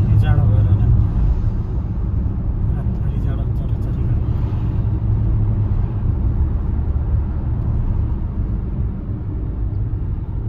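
Steady low rumble of a car's engine and road noise heard inside the cabin while driving slowly.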